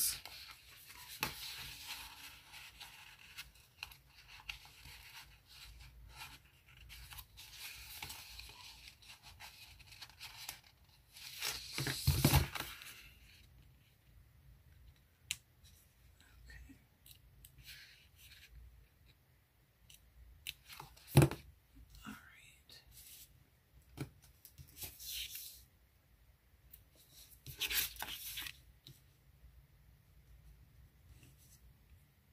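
Paper sticker sheets rustling and small stickers being peeled off their backing with tweezers, with a louder rustle of paper about twelve seconds in and a few sharp taps and clicks afterwards, the sharpest about two-thirds of the way through.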